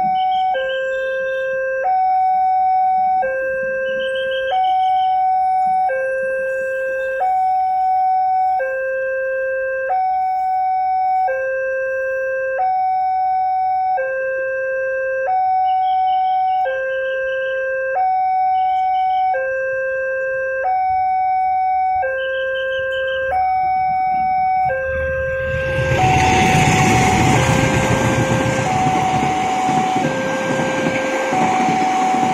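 Railroad level-crossing warning alarm from the signal mast's loudspeaker, sounding a steady two-tone signal that alternates between a higher and a lower note about once a second. About 25 seconds in, the loud rumble and wheel noise of a passing passenger train joins it, with the alarm still going.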